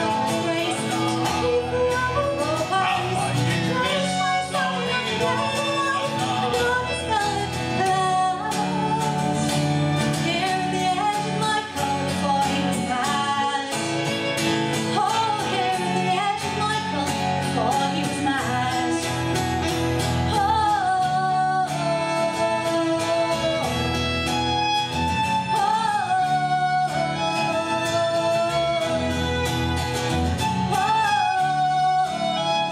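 Live folk music: a woman singing with strummed acoustic guitar and violin accompaniment.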